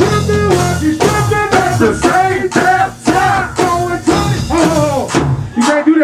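Go-go band playing live: male voices singing over bass guitar and a drum kit with a steady beat. The bass and drums cut out shortly before the end, leaving the voice.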